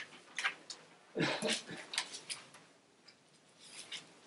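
Sheets of yellow legal-pad paper rustling and being shuffled close to a lectern microphone: a few short crinkles and ticks, the largest about a second in.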